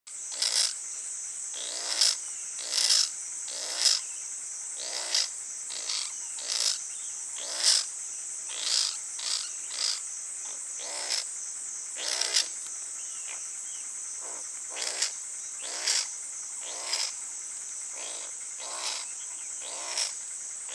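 A young ferret-badger making short, repeated calls, roughly one or two a second and varying in loudness, over a steady high-pitched drone of insects.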